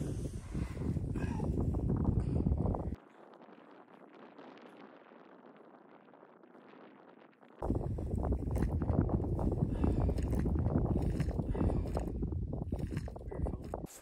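Wind buffeting the microphone: a dense low rumble that drops away to a faint hiss for about four seconds in the middle, then comes back.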